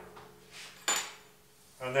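A metal utensil clinks once against a stainless steel mixing bowl with a brief high ring, as dough ingredients start to be stirred together.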